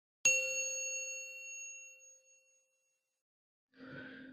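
A single bell-like notification ding sound effect, struck once about a quarter second in and ringing out, fading away over about two seconds, as a subscribe button is tapped.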